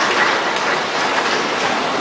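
Steady, even hiss of background noise with no distinct events, like the room tone of a large chamber carried on a noisy broadcast feed.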